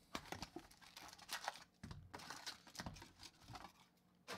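Faint handling of hockey trading cards and their sealed wrapper packs: scattered rustles, crinkles and soft clicks as the cards are flipped and the packs are set down.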